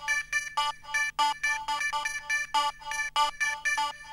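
Techno track on vinyl: a synthesizer riff of short, repeating staccato notes, about four or five a second, playing without a beat.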